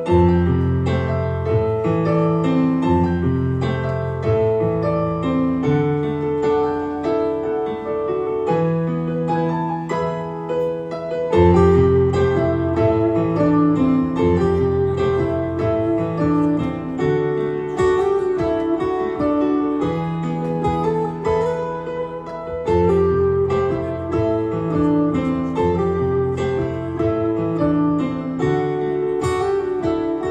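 Live progressive rock band playing, led by keyboards in a piano-like sound over sustained bass notes, with electric guitar. The chords change every couple of seconds, and the band comes in louder about a third of the way through.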